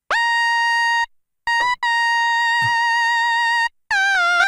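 Korg minilogue xd polyphonic analogue synthesizer playing single lead notes: a held note of about a second, a brief one, then a longer held note with a slight waver in pitch, and a new note starting near the end. Each note slides into its pitch from the portamento setting.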